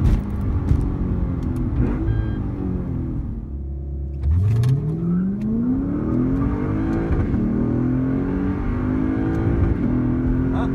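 Lexus IS F V8 with an aftermarket cat-back exhaust, heard from inside the cabin under hard acceleration. Its pitch rises and falls through the gears, settles briefly to a low steady note about three and a half seconds in, then climbs again in one long rising sweep.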